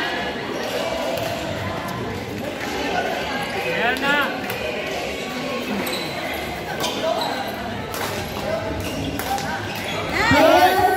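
Badminton rally: several sharp racket hits on the shuttlecock in the second half, over voices talking in the background.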